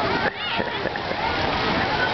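Water splashing as children paddle in inner tubes on a lazy river, over a steady rush of water falling from overhead spray pipes. Children's voices call out over the water.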